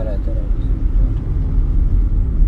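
Steady low rumble of a car running, heard from inside the cabin.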